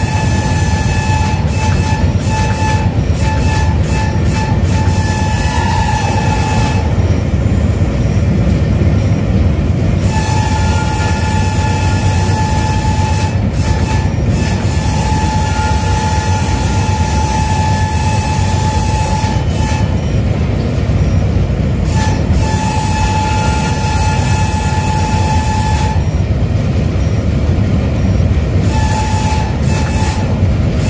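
AGE-30 diesel locomotive running at about 100 km/h, heard from its cab: a steady low rumble, with the horn held in long blasts that break off for a couple of seconds three times.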